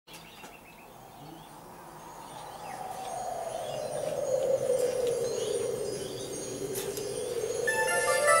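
Opening of the song's intro fading in from silence: a whooshing, wind-like swell that sweeps down in pitch and back up, with scattered chime tinkles over it. Sustained ringing notes come in near the end.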